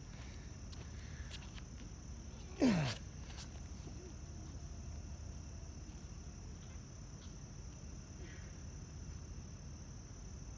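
Steady chorus of night insects, a constant high-pitched drone, with a loud short grunted "yeah" falling in pitch about two and a half seconds in.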